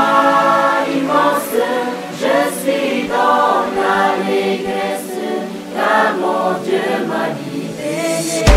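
A choir singing unaccompanied in harmony, in short phrases of about a second each.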